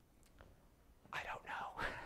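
About a second of near silence, then a man speaking in a whisper.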